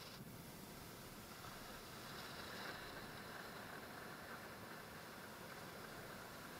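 Ocean surf: small waves breaking and foam washing up the sand, heard as a faint, steady rush that swells a little about two to three seconds in.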